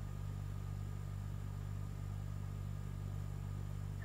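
A steady low hum with faint background hiss, unchanging throughout.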